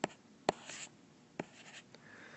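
Stylus writing on a tablet screen: three sharp taps with short, faint scratching strokes between them.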